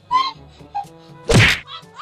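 A single loud whack, like a slap or hit, about a second and a half in, over light background music.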